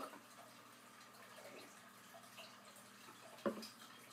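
Faint sips and swallows of a drink from a glass, with one short knock about three and a half seconds in.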